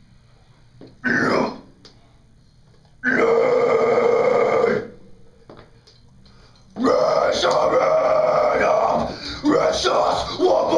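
Metalcore vocalist's unaccompanied harsh, growled vocals into a handheld microphone, with no backing music heard. A short burst comes about a second in, a held growl follows from about three to five seconds, and a longer phrase starts about seven seconds in.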